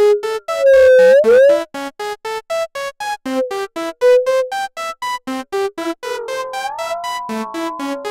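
Synthesizer arpeggio of short repeating notes, about four or five a second, running through an Eventide Rose delay pedal set to a very short delay time with high feedback. About half a second in the delay knob is turned and the feedback swoops loudly up and down in pitch for about a second. Around six seconds a second, flanger-like pitch sweep settles into a ringing tone under the notes.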